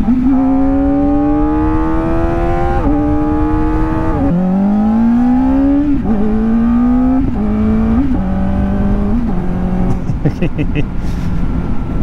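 Kawasaki Ninja sport bike's inline-four engine pulling up through the gears: its note climbs steadily, drops in a step at each upshift and climbs again, several times over. Later it settles at a lower, steadier pitch and fades into wind rush near the end.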